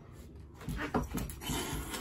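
Domestic cat giving short calls, starting about half a second in, as two cats play-fight on a cat tree.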